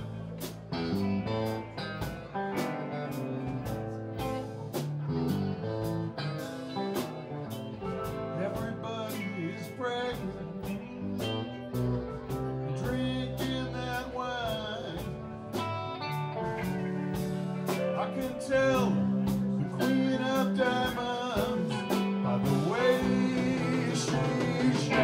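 Live rock band playing: drum kit keeping a steady beat under keyboard, guitars and bass, with lead lines that slide in pitch.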